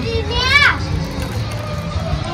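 A child's high-pitched voice calling out briefly, rising and then falling, about half a second in, among people talking, over a low steady rumble.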